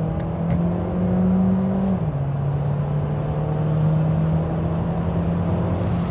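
Mercedes-Benz GLA 250e's 1.3-litre four-cylinder petrol engine, heard from inside the cabin, pulling hard under a full-throttle kickdown with the revs climbing. About two seconds in, the pitch drops once as the gearbox shifts up, then it rises again.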